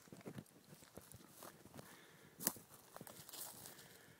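Faint footsteps and rustling through pine boughs and forest-floor brush: a scatter of small clicks and scuffs, with one sharper snap or knock about two and a half seconds in.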